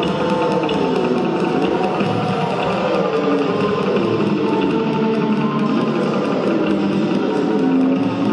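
Experimental electric guitar music: a dense, noisy texture full of slowly sliding, wavering pitches, with a fast, even ticking running over it.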